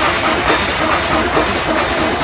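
Electronic dance music from a UK garage and bassline DJ mix, in a hissy, noise-heavy passage with a quick repeating synth figure and the bass lighter than in the bars just before.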